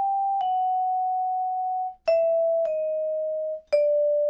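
Musser vibraphone bars struck with yarn mallets in pairs a half step apart, descending: each higher note rings clear and is cut off by the player's hand the instant the next, lower note is struck, a hand-dampening technique. A pair sounds at the start, another about two seconds in, and a third begins near the end.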